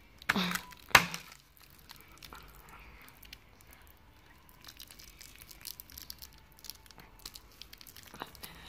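A sigh and a sharp tap about a second in, then light, scattered crackling and rustling of a paper wall calendar and its strips of brown tape being handled and pressed back onto the wall.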